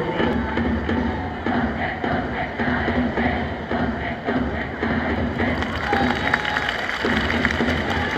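Cheering-section music at a Japanese professional baseball game, with a steady beat of about two beats a second over dense crowd noise.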